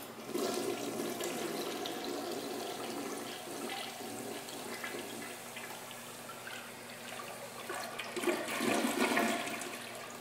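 American Standard tank toilet flushing: water rushes and swirls through the bowl. The rush swells louder near the end as the bowl drains down, then fades.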